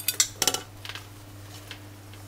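A few light clinks and knocks from a china plate being handled, clustered in the first half-second and loudest about half a second in, with a couple of fainter ticks after, over a steady low hum.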